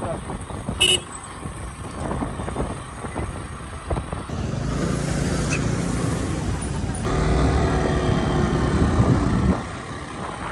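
Motorcycle running under way with road and wind noise, a short horn toot about a second in. The engine grows louder from about four seconds in and drops back just before the end.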